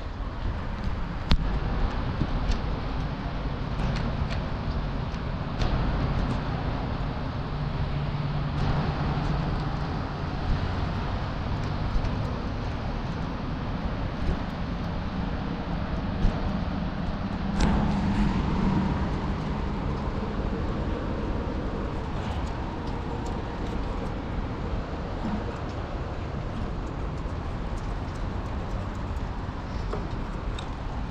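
Handling noise from a small camera held in the hand: a steady low rumble with scattered clicks and knocks.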